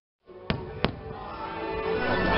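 Two fireworks bangs about a third of a second apart, over show music that builds back up after a brief dropout to silence.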